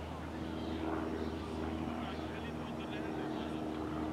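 A steady engine drone, even in pitch, that comes in shortly after the start, with faint voices in the background.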